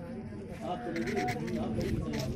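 Voices of several people talking over one another, the pitch wavering up and down.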